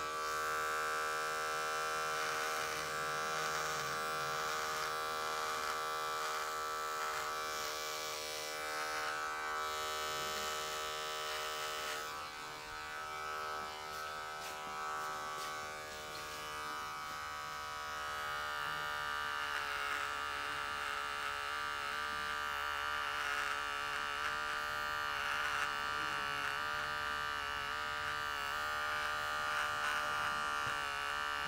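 Electric hair clipper buzzing steadily as it trims a beard along the jaw and neck. It drops in level for a few seconds in the middle, then comes back up.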